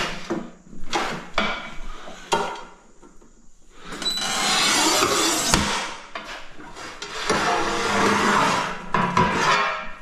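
A Sigma manual tile cutter's scoring wheel is drawn across a black porcelain tile in two long, gritty scraping strokes, about four and about seven seconds in, with one sharp crack during the first. A few short knocks come before it as the tile is set against the cutter.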